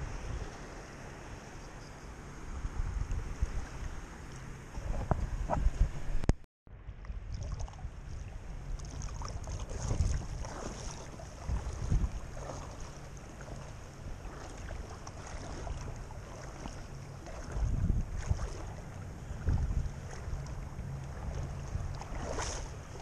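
Wind buffeting the microphone over lapping shallow bay water, with louder swells of rumble and slosh every few seconds. The sound drops out completely for a moment about six seconds in.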